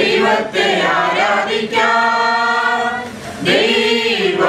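A group of women and men singing a Malayalam Christian song together, holding one long note in the middle and starting a new phrase near the end.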